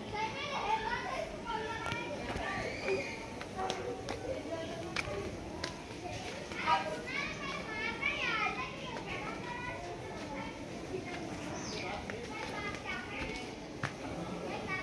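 Several children's voices chattering and calling out over one another, high-pitched and lively, with a few scattered sharp clicks.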